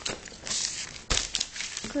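Clear plastic comic bag crinkling as it is handled, in a few rustling bursts, the sharpest a little past the middle.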